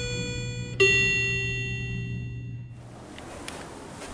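Short intro music sting: a ringing note, then a louder one about a second in that fades away by about three seconds in. A quieter, even background hum follows.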